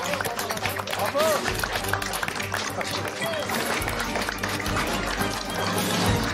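Studio audience applause with a few whoops, over upbeat show music with a pulsing bass beat.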